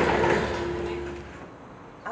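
Steady mechanical hum with a low rumble and broad street noise, fading away after about the first second.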